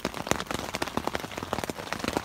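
Heavy rain hitting a tent's fabric, heard from inside the tent: a dense, uneven stream of separate drop hits over a steady hiss.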